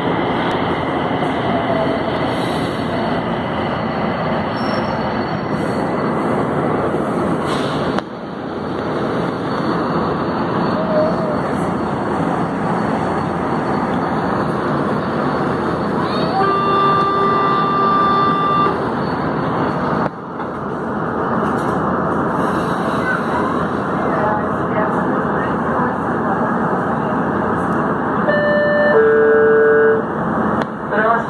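A São Paulo Metro electric multiple-unit train running through a tunnel, heard from inside the car as a steady loud rumble of wheels on rail. Midway a steady pitched tone sounds for about two and a half seconds, and near the end a short run of stepped tones is heard, typical of the chime that comes before the next-station announcement.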